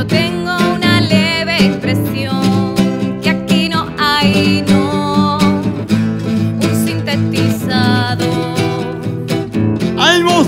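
Acoustic guitar playing a steady chordal accompaniment, with a voice singing a melody over it with vibrato.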